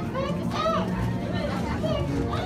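High-pitched voices calling and shrieking in short rising-and-falling cries, over a low steady hum.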